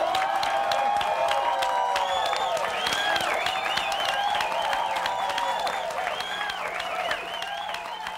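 Studio audience applauding and cheering at the end of a live rock song, a dense patter of clapping mixed with shouts, easing slightly near the end.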